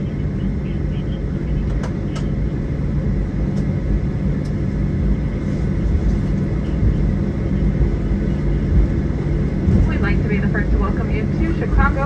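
Steady cabin noise of an airliner taxiing after landing, heard from inside the cabin: the idling jet engines and rolling make a low, even hum. A voice comes in near the end.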